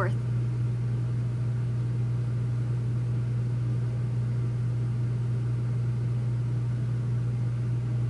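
A steady low mechanical hum, unchanging throughout, with a faint even hiss under it.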